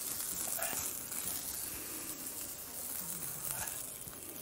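Butter sizzling faintly and steadily in a hot skillet, just after the asparagus has been cooked in it.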